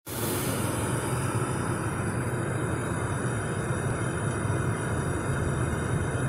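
Steady road and engine noise heard inside a car's cabin while it drives.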